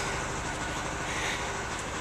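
Steady low mechanical hum with a faint steady tone in it, unchanging through the pause.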